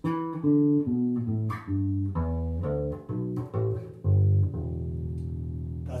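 Electric bass guitar playing a blues-scale run in E, single plucked notes one after another as the two descending passes are joined with the E played only once. It ends on one long held low note that cuts off at the very end.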